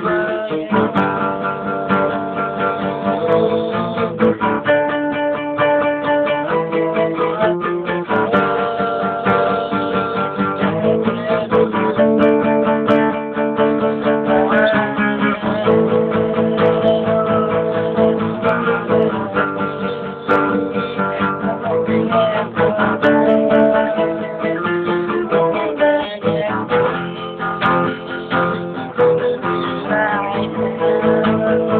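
Acoustic guitar played solo, an instrumental piece of picked and strummed chords that change every second or two, with quick runs of repeated notes.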